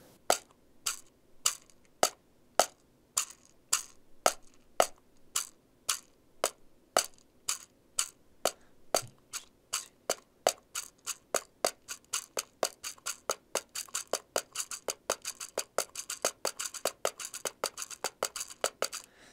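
Pocket cajón, a palm-sized wooden box drum, tapped with the fingers in the samba pattern of low "tu" and higher "ti" strokes: crisp wooden clicks at a steady pulse, about two a second at first and filling in to several a second over the last few seconds.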